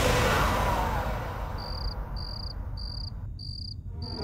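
Background music fades out, and from about halfway in a cricket chirps in short, even, high-pitched pulses, a little under two a second.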